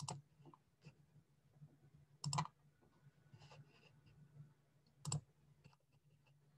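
Faint clicks at a computer: one at the start, then a quick double click about two seconds in and another about five seconds in, with a few softer ticks between, over a faint steady low hum.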